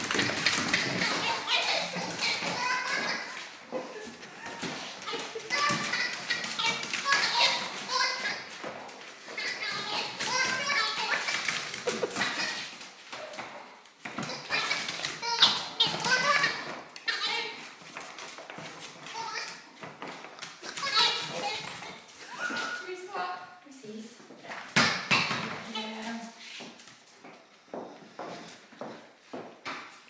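A rubber squeaky dog toy being squeezed over and over in quick runs of high squeaks, with short pauses between the runs.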